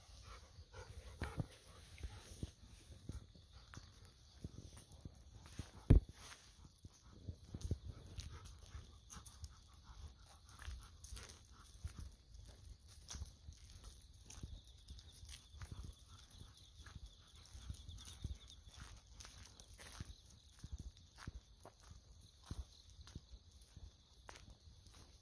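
Golden retrievers and a walker moving along a path: irregular footfalls, paw steps and rustles, with one sharp knock about six seconds in. Autumn insects chirr steadily in the background.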